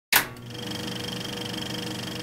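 A sharp hit just after the start, then a film projector running with a steady whir and a rapid flutter.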